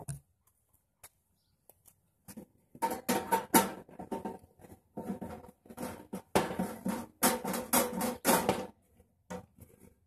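Metal propane regulator being twisted and threaded onto a portable gas grill's valve inlet: a run of irregular clicks, knocks and scrapes with a faint metallic ring, starting a couple of seconds in.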